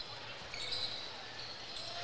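Basketball being dribbled on a hardwood gym court, faint, over the murmur of the gym.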